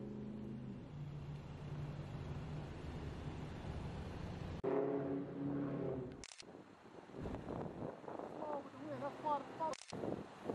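Faint, indistinct voices over background noise, cut abruptly several times between short clips.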